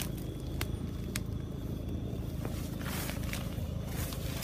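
Footsteps through cut leaves and undergrowth, with a few sharp ticks and leaf rustling, over a low steady rumble.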